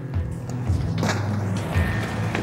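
Background music with a deep, moving bass line and a sharp percussive hit about every half second.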